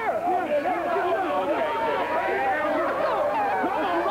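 Several men talking and shouting over one another at once, a continuous jumble of excited voices at a victory celebration.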